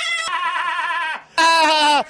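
A man's voice making two long, drawn-out wavering calls, bleat-like rather than spoken words. The first runs about a second, and a louder, shorter one comes after a short break near the end.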